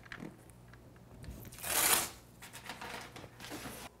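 Blue painter's tape being handled and stretched across kraft paper on a wall: faint rustling, with one louder half-second rasp of the tape a little before the middle.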